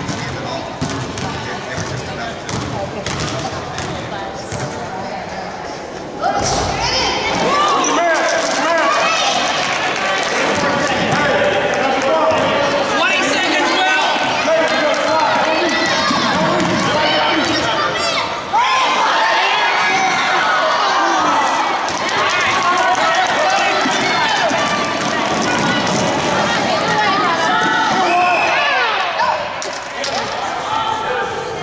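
A basketball bouncing on a hardwood gym floor amid game noise, with many spectators' voices shouting and cheering, suddenly louder from about six seconds in.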